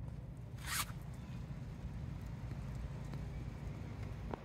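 A short rustling swish about a second in, over a steady low rumble.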